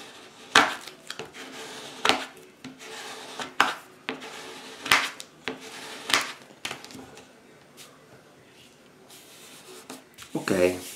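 Plastic scraper drawn in short strokes over a glued paper print on a table, smoothing it down onto the paper beneath. About a dozen irregular sharp scrapes and taps over the first seven seconds, then quieter.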